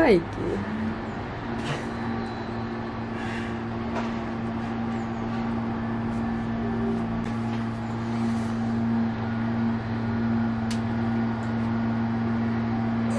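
A steady low mechanical hum of constant pitch sets in about half a second in and holds, with a few faint clicks over it. A brief voice sound comes at the very start.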